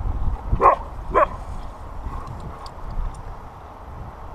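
A husky giving two short barks about half a second apart, about a second in, while playing with another husky.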